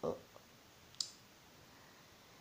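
A single short, sharp click about a second in, against faint room hiss.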